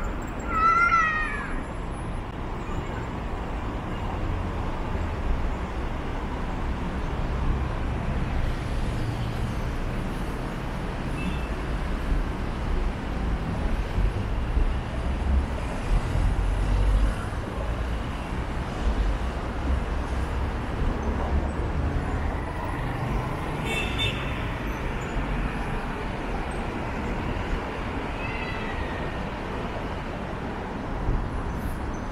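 Steady road traffic rumble from cars passing on the multi-lane road below, swelling and easing as vehicles go by. About a second in, a brief high-pitched wavering call sounds over the traffic.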